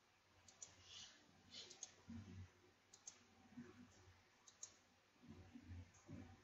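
Faint computer mouse clicks: a few quick pairs of clicks spread through, with soft low thumps around two seconds in and near the end, over quiet room tone.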